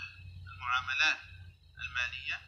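A man's voice speaking Arabic in two short phrases, sounding thin and tinny, over a low steady hum.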